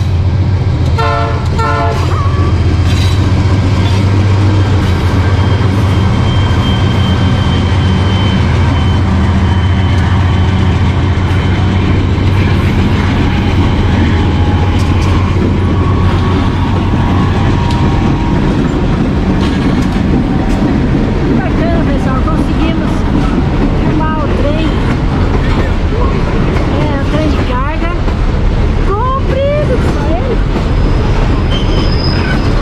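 A freight train passing close by. For about the first half its diesel-electric locomotives run with a loud, deep, steady drone; then the hopper wagons roll past with steady wheel noise and a few brief wheel squeals near the end.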